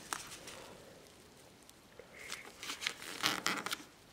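Origami paper being folded and creased by hand: a quiet start, then from about halfway a run of sharp crinkles, rustles and squeaky scrapes as the paper is handled and pressed flat.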